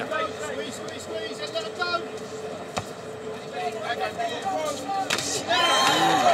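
Boxing arena crowd ambience with scattered voices and shouts from the audience and ringside, and one sharp knock about three seconds in; the voices grow louder near the end.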